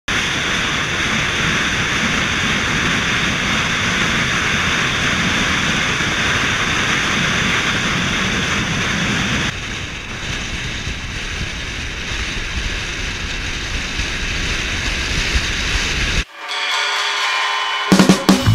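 Steady rush of wind and road noise from a camera mounted outside a moving car, dropping to a lower level at a cut about halfway through. Near the end the rush stops abruptly and music begins.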